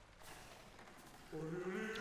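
Faint room noise, then about 1.3 s in a short hum held at one steady pitch from a person's voice, leading straight into speech.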